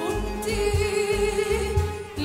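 Female vocalist singing a long held note with a wavering, ornamented pitch, accompanied by an Arabic takht ensemble with low bass notes pulsing underneath.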